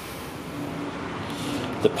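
Steady room tone in a pause between speech, with a faint steady hum through the middle; a man's voice starts again near the end.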